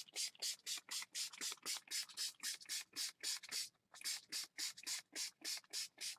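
Hand-pumped spray bottle of colour mist spritzed rapidly onto paper through a stencil: a fast run of short hisses, about four a second, with a brief pause about four seconds in.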